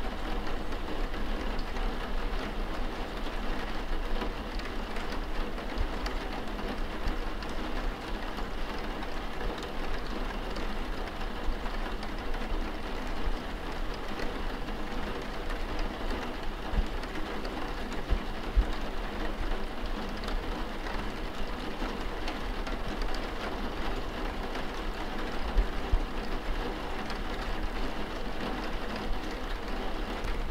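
Steady pouring rain, an even hiss of drops, with a few short low thumps in the second half.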